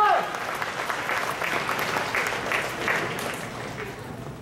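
Audience applauding, thinning out toward the end.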